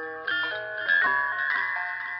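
A small toy carousel playing its music-box tune, a screechy melody of high chiming notes that change several times a second.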